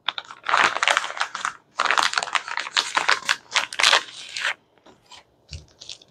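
Clear plastic bag being pulled open and handled, crinkling in two long spells, then a few faint crinkles near the end.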